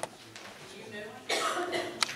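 A person coughing once, a short loud burst about a second and a half in, over faint indistinct chatter. A sharp click sounds at the start and another at the end.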